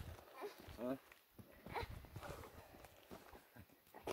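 Faint footsteps on rocky ground, a scatter of soft knocks, with a faint voice heard briefly twice.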